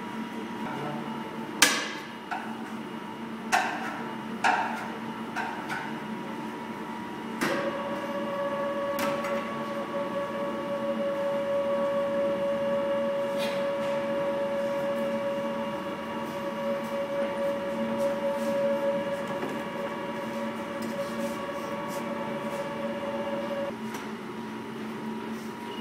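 Bakery dough-handling machinery: four sharp metallic knocks on the steel bowl and hopper in the first several seconds. Then an electric motor starts with a steady whine that runs for about sixteen seconds and stops suddenly near the end, over a constant machine hum.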